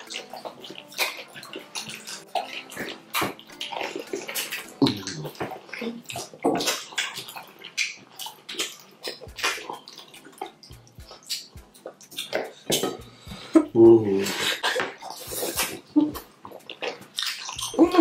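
Wet, sticky squelching and smacking of fingers working fufu through slimy ogbono soup, and of mouths chewing it: a steady run of short, irregular wet clicks. A brief hum or laugh breaks in about three-quarters of the way through.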